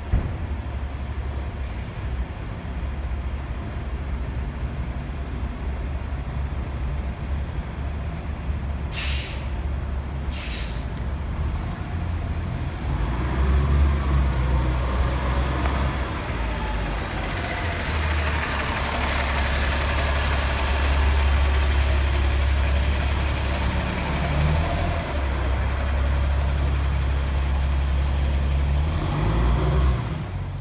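City transit bus engine running steadily, with two short air-brake hisses about nine and ten seconds in. From about thirteen seconds in the engine runs louder, its pitch gliding as the bus pulls away and passes close by.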